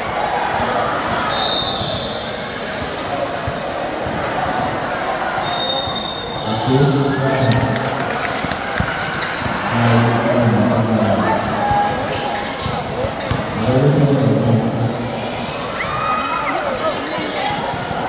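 Basketball game sounds: a ball bouncing on a hard court amid scattered sharp knocks and shoe noises, with two short, high whistle blasts in the first six seconds. Male voices call out loudly several times from about seven seconds on.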